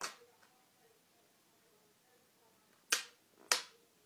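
Thin plastic water bottle being handled, giving sharp clicks: one at the start, then two louder ones about half a second apart near the end.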